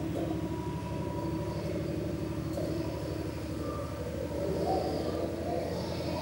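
A steady low mechanical hum with an even, buzzy drone.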